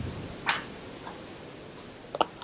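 A single short, sharp click about half a second in, over faint room tone.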